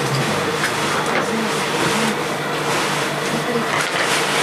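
Steady mechanical hum of industrial sewing machines running in a workroom, with a faint voice in the background.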